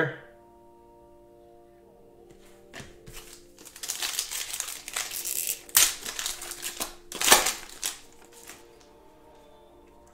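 Foil trading-card pack wrapper being crinkled and torn open by hand: a run of rustling crackles with two louder rips in the second half.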